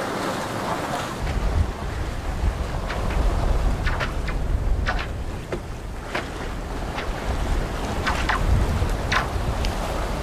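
Wind buffeting the microphone over the rush of water along a sailing yacht's hull under way, with a few short splashes of waves against the hull. The low wind rumble comes in about a second in.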